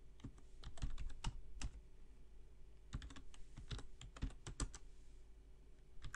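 Keystrokes on a computer keyboard, typing a command in two quick runs of clicks with a pause of about a second between them.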